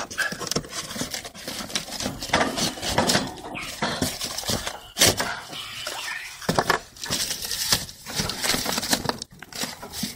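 A cardboard box being handled at close range: rustling, scraping and sharp knocks at irregular moments.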